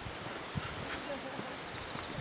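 Footsteps of a person walking on an asphalt path, soft low thuds about twice a second, over a steady rustling hiss of wind and leaves.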